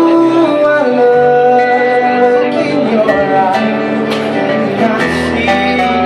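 A small band playing live: two acoustic guitars and a keyboard, with a sung melody over them. A deeper bass part comes in about five seconds in.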